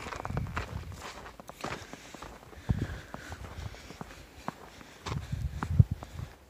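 Footsteps walking through deep snow, an irregular series of soft thuds that grow louder near the end.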